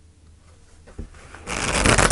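Tarot deck being riffle-shuffled on a table: near-quiet at first with one small tap about a second in, then a quick, dense rush of cards riffling together from about one and a half seconds in.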